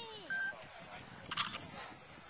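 A child's cheering voice trailing off with a falling pitch, then a brief shrill sound about a second and a half in.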